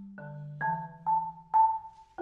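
Solo concert marimba played with mallets: a low bass note ringing under higher struck notes, about four strokes roughly half a second apart.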